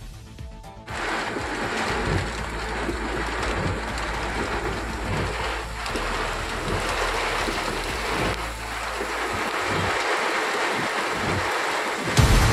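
Heavy rain pouring down steadily, with gusty wind rumbling on the microphone; it starts abruptly about a second in.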